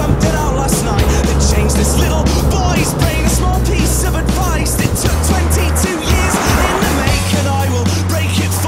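Background music with a drum beat and a deep bass line that holds each note for a second or two.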